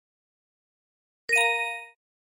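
A single electronic bell-like chime sound effect: one bright ding of several ringing tones together, starting about a second and a half in and cut off after about half a second.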